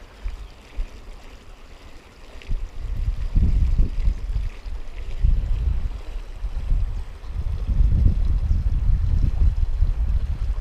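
Wind buffeting the microphone in irregular gusts. It is lighter for the first couple of seconds, then comes in stronger gusts from about three seconds in.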